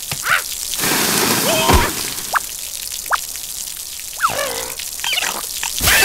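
Cartoon water spraying and splattering in jets, with several short squeaky character cries that sweep up and down in pitch.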